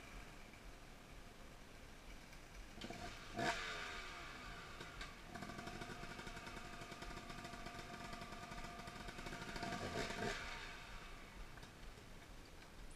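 Dirt bike engine revving: a sharp blip of the throttle about three seconds in that falls away, then a held rev from about five seconds that swells near the end and dies away.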